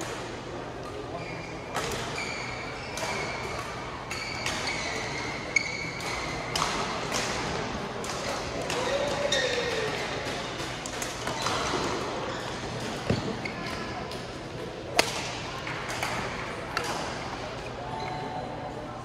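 Badminton rally: sharp cracks of rackets striking the shuttlecock come at irregular intervals, the loudest about five and fifteen seconds in, with high squeaks of shoes on the court and voices murmuring in the echoing hall.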